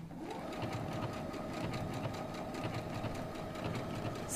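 Electric domestic sewing machine running steadily, sewing a buttonhole stitch around a fabric appliqué on a slow speed setting.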